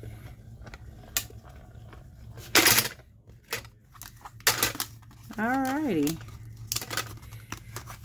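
A small hand-cranked die-cutting machine and its plastic cutting plates being handled as the die sandwich is rolled through and pulled apart: scattered clicks and clacks of plastic and metal, with one short, loud scrape about two and a half seconds in.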